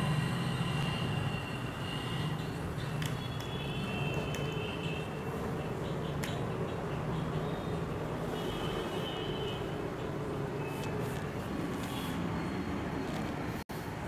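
Steady low background hum, with light brushing of cotton uniform cloth being smoothed flat by hand on a cutting table. Faint high tones come and go.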